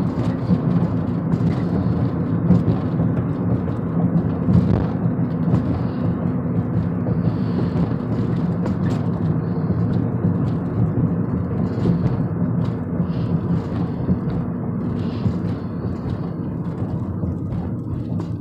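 Car cabin noise while driving: a steady low rumble of engine and tyres on the road, heard from inside the car, with a few faint clicks.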